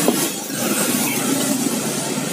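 Steady street traffic noise, an even rumble and hiss with no distinct single event standing out.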